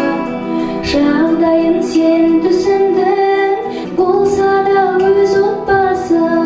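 A female singer sings a song into a corded handheld microphone over musical accompaniment, amplified through a hall sound system, holding long notes that glide between pitches.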